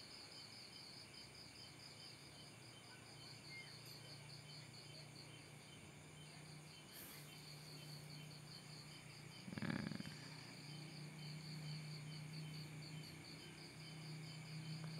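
Night insects, crickets among them, chirping in a steady high pulsing trill of about five pulses a second, over a faint low hum. One brief louder noise comes about two-thirds of the way through.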